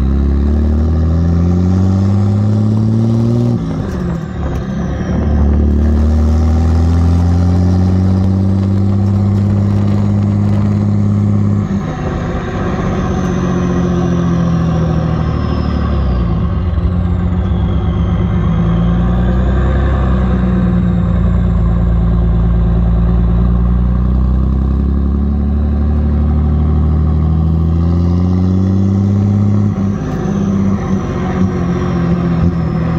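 Diesel pickup engine heard through a tall bed-mounted exhaust stack, pulling hard under way: its note climbs and drops back at upshifts about four seconds in and again about twelve seconds in, then rises and eases a few more times. A faint high whistle glides down and back up in the middle.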